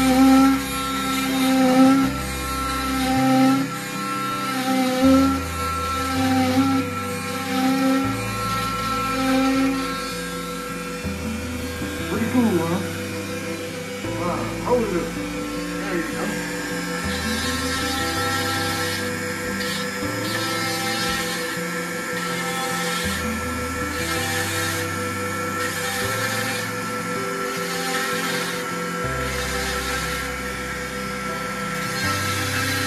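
Background music with a stepping bass line, over the steady whine of an oscillating cast saw cutting through an arm cast, its pitch wavering for a few seconds near the middle.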